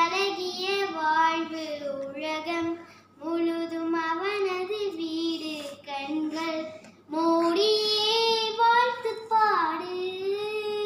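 A young girl singing solo and unaccompanied, holding long sustained notes that slide between pitches, with short pauses for breath about three and seven seconds in.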